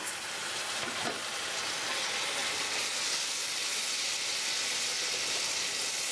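Onion and tomato masala frying in oil in a non-stick kadhai, a steady sizzle with bubbling that grows slightly louder.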